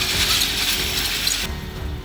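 The spinning rollers of a long roller slide rattle under a rider in a fast, dense clatter. The clatter stops suddenly about one and a half seconds in.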